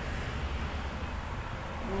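A pause in speech with a low, steady background rumble and faint hiss.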